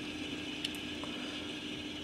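Quiet room tone with a steady low hum. A single faint click about two-thirds of a second in comes as the plastic model flat car is turned over in the hand.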